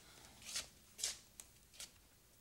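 Four faint, brief rustling or handling noises about half a second apart.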